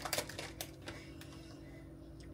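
Faint clicks and crinkles of a plastic candy bag being handled, mostly in the first second, over a low steady background hum.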